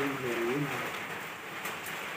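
A pigeon or dove cooing, one low arched call in the first half second or so, over a steady hiss of rain.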